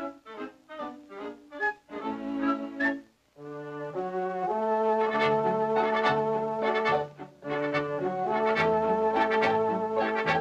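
Cartoon orchestral score led by brass. It opens with about three seconds of short, detached notes, then after a brief pause moves into long held brass chords over a stepping bass line, broken once in the middle.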